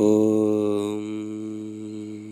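A man chanting one long, steady low note, an Om: the open vowel closes to a hum after about a second.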